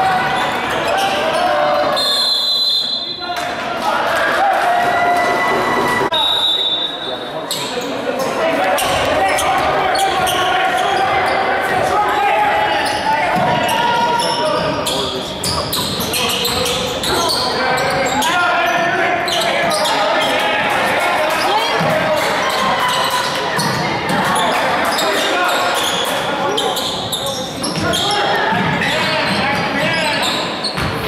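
Basketball game play: a basketball dribbling and bouncing on the hardwood court in quick, repeated thuds, with players' and spectators' voices calling out, echoing in the gymnasium.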